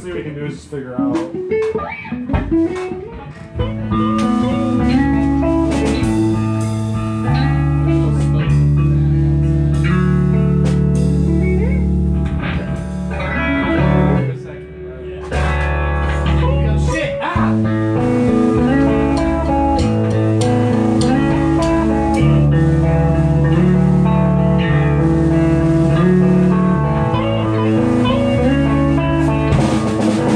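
Electric guitars and an electric bass guitar played live together, with held low bass notes under chords. The playing is loose for the first few seconds, settles into a full, steady groove about four seconds in, and dips briefly about halfway through.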